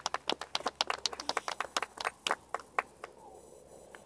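A small group of people clapping by hand, uneven claps for about three seconds that then die away.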